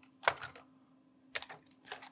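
Light plastic clicks and crackles of a clear plastic packaging tray being handled with gloved hands, in three short clusters: about a quarter second in, about a second and a half in, and at the end.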